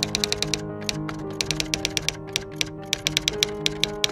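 Rapid typing clicks like typewriter keys, in two quick runs with a short break about a second in, over background music of steady held chords.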